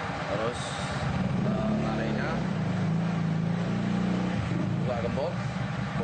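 A motor vehicle engine running close by, a steady low hum that grows louder about a second and a half in and drops back after about four seconds, with faint voices over it.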